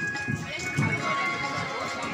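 Fairground background of crowd voices talking over steady music from loudspeakers.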